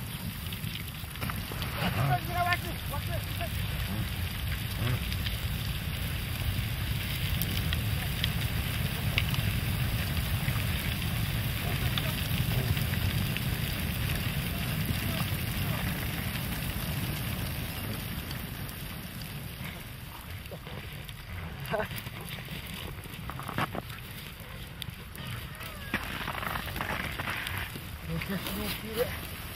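Wind rumbling on the microphone in open snowy tundra, easing somewhat after about two-thirds of the way through, with a few scattered short clicks and knocks.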